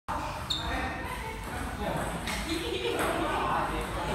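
Table tennis ball clicking off a table or paddle a few times, the first click about half a second in being the loudest, with a short ringing ping. Voices murmur in the background of a large, echoing hall.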